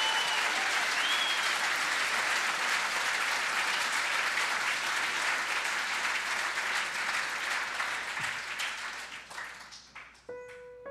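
Concert audience applauding steadily, then dying away over the last two seconds.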